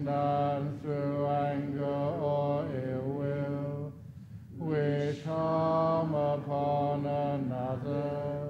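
A Buddhist monk chanting in Pali in a deep, near-monotone voice. The recitation runs in two long phrases with a short break for breath about four seconds in.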